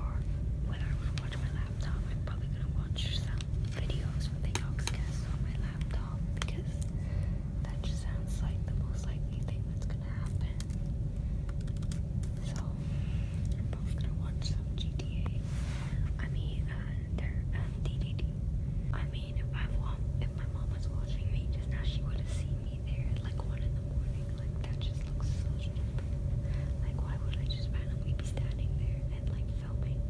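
Faint whispered speech over a steady low rumble and a constant hum, with scattered light clicks.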